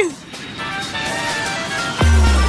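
An edited sound effect over background music: a hissing rush with a held, slowly rising tone that starts about half a second in.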